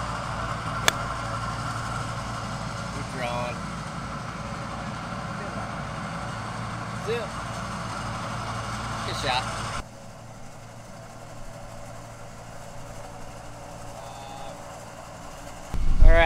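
A single sharp click about a second in, a wedge striking a golf ball on a short approach shot, over a steady low hum that cuts off abruptly a little after the middle. A few faint voices are heard briefly.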